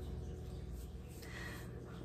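Quiet kitchen room tone with a steady low hum and no distinct event, only a faint soft rustle about a second and a half in.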